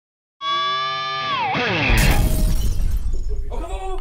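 Produced intro sting: a held bright note with many overtones dives steeply down in pitch, then a loud crash like shattering glass with a deep boom comes in about two seconds in and fades away. Voices begin just before the end.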